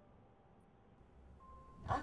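Near silence: quiet room tone with a few faint sustained tones. A woman's voice begins near the end.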